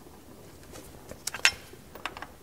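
A few light metallic clicks and taps of an open-end wrench against the fuel-line fitting of a fuel pressure regulator, bunched together about a second in, the loudest near the middle.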